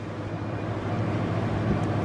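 Steady low hum with a soft rushing noise that grows slightly louder, from a handheld camera being moved about.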